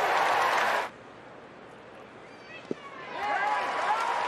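Ballpark crowd cheering a strikeout, cut off sharply about a second in. Near the end, a single sharp pop of a pitch smacking into the catcher's mitt is followed by the crowd's cheer building again.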